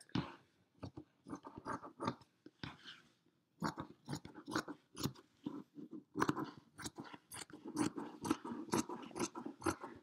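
Fabric scissors cutting through doubled knit fabric in a quick, irregular run of snips, with a brief pause about three seconds in.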